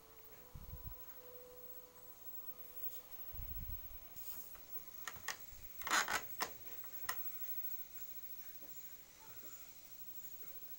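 Lidded plastic food containers being handled and stacked: two low dull bumps in the first few seconds, then a cluster of sharp clicks and plastic knocks between about five and seven seconds in, the loudest near six seconds.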